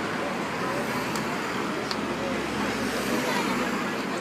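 City road traffic noise, with a vehicle passing whose low rumble swells in the middle and fades near the end.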